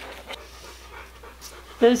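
A dog panting softly, with a woman starting to speak near the end.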